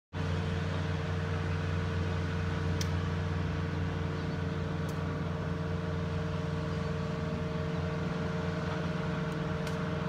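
Steady low machine hum with a constant tone over it, unchanging throughout, and two faint high clicks about three and five seconds in.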